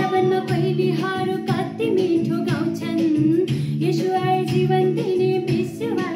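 A woman singing a solo song over an instrumental backing with sustained chords, her voice gliding between held notes.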